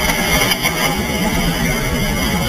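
Solid rocket motor of a THAAD interceptor launching: a loud, steady rush of exhaust noise with crackle, heard from within the smoke cloud.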